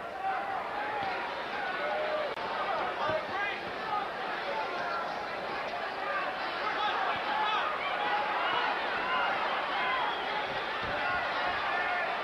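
Boxing arena crowd: many voices shouting and calling over one another at a steady level.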